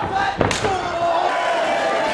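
A single loud slam about half a second in, a body hitting the wrestling ring, with voices shouting around it.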